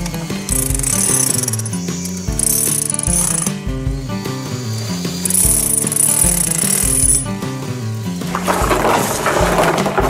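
Handheld electric demolition hammer chiseling into concrete, running in spells, heard under background music with a steady beat.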